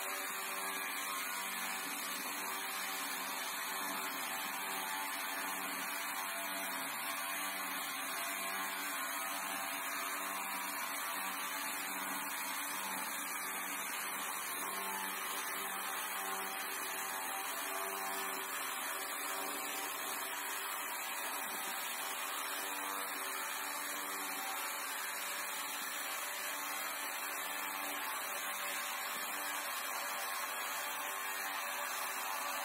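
Homemade electric bar sawmill: an electric motor driving a chainsaw bar and chain, ripping lengthwise through a log. It runs steadily under load at an even, unchanging level.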